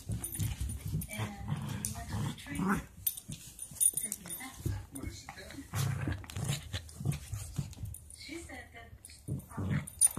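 A small long-haired dog making a run of short, irregular noises right at the microphone, with muffled talk from a television behind.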